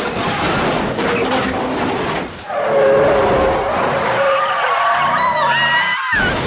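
Film sound of a highway crash: clattering wreckage and noise for the first two seconds, then a long, wavering tyre screech of a car skidding. Near the end a higher rising cry comes in, a woman screaming.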